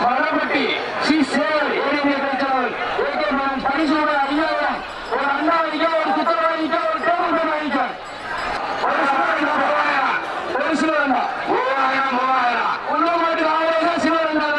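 A man speaking continuously, in a steady running-commentary manner, with only short pauses.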